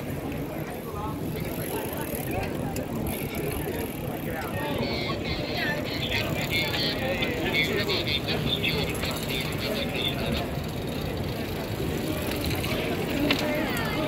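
Bicycles passing at an easy pace, their freewheel hubs ticking as riders coast by, clearest for several seconds in the middle; voices of riders and onlookers underneath.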